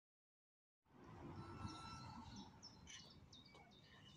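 Silence for the first second, then faint outdoor ambience: a low background rumble with small birds chirping, many short high notes repeating through the rest.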